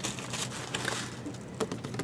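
Faint rustling and a few light clicks of a printed card and box contents being handled and picked up.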